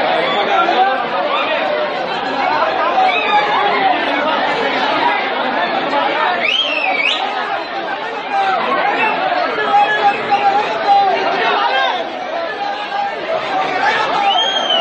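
Dense crowd of many people talking and shouting at once, with a brief high rising sound about six and a half seconds in.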